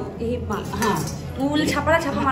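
Bangles and jewellery clinking a few times on a bride's wrists, with women's voices talking over them.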